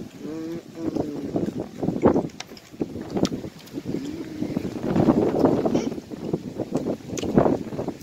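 Wind buffeting a phone microphone in irregular gusts, with a few handling clicks and faint voices in the background.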